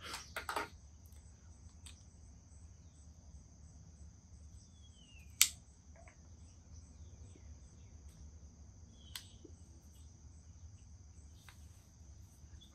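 Steady, high insect chorus with a single loud, sharp click about five seconds in as a lighter is struck to light a tobacco pipe, and a fainter click a few seconds later.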